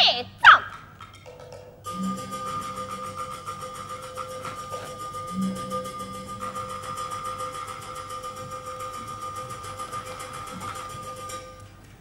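Chinese opera percussion accompaniment. Two sharp strikes with a falling pitch open it, then a long, very fast roll over a steady ringing tone, with a few low thuds, cuts off suddenly near the end.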